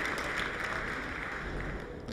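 A large crowd applauding, a steady patter of many hands that slowly dies down.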